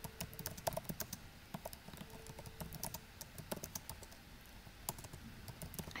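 Typing on a computer keyboard: a run of keystroke clicks at an uneven pace.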